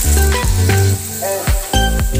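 Background music, with snails frying in oil in a wok sizzling underneath.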